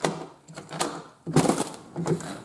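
Wide-slat horizontal window blinds clattering as they are pushed and handled, in several irregular bursts of rattling, the loudest about a second and a half in.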